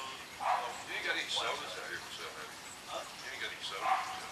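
A dog barking several short barks, with people's voices in the background.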